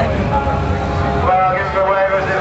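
Ural 750 cc sidecar motorcycle's flat-twin engine running, with people's voices over it.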